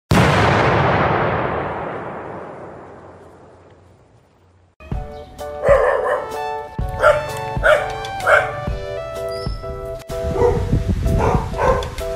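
A single sound-effect hit that fades away over about four seconds. About five seconds in, background music starts, and a small dog barks several times over it.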